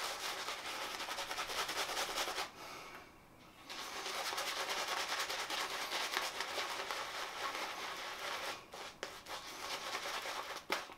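Two-band silvertip badger shaving brush working shaving-soap lather over the face and neck: a steady, fast, wet scratchy brushing. It pauses for about a second near the third second, and briefly again near the end.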